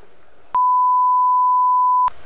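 A steady 1 kHz test tone of the kind played with colour bars, one pure pitch that starts suddenly about half a second in.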